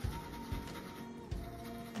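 Background music of held, steady notes, the top note stepping down a little past halfway, over a soft low pulse.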